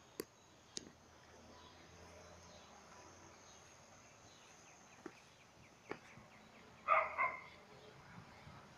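A dog barks twice in quick succession about seven seconds in, over a faint, steady, high insect drone. A few soft clicks come earlier.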